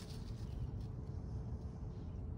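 Quiet outdoor background: a steady low rumble with a faint constant hum and no distinct event.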